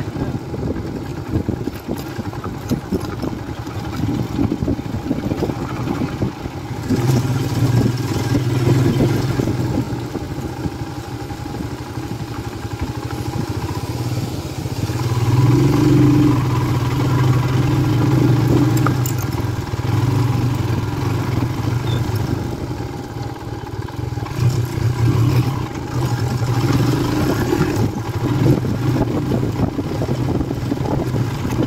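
Royal Enfield Himalayan's 411 cc single-cylinder engine running under way on a rough dirt track, with wind and chassis clatter. The engine pulls harder about a quarter of the way in and again around halfway, eases off briefly near three-quarters, then picks up again.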